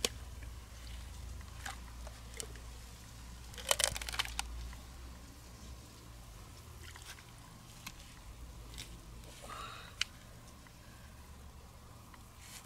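Large freshwater mussel shells clicking, crunching and scraping as they are handled and set down on dry grass, with a short cluster of crackles about four seconds in and a single sharp click near the end.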